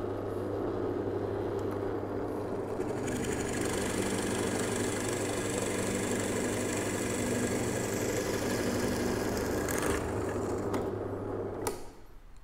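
Parkside benchtop drill press motor running steadily while a Forstner bit bores into a wooden board. The rasp of the bit cutting wood joins the motor hum about three seconds in and stops at about ten seconds, leaving the motor running alone until it fades near the end.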